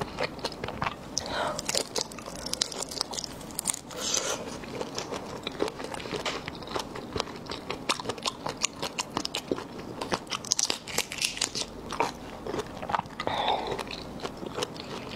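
Raw tiger shrimp being eaten: shells crackling and clicking as they are pulled apart by hand, with biting and chewing. Many sharp little clicks run throughout, with a few louder crunches.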